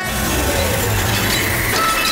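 A loud, steady rushing noise with a deep rumble underneath, lasting about two and a half seconds: a cartoon sound effect.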